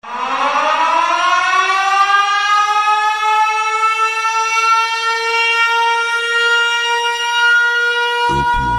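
A siren-like wail that starts suddenly, rises from a low pitch over about three seconds, then holds one steady high tone.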